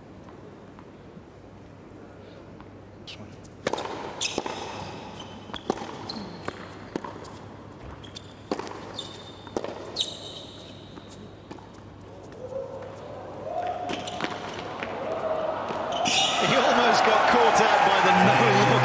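A tennis rally on a hard court: racket strikes and ball bounces at an irregular pace, with sneaker squeaks. Near the end the crowd cheers and applauds.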